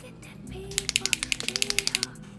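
Posca paint marker being shaken, its mixing ball clacking inside the barrel in rapid clicks, about ten a second, starting just under a second in, over background music.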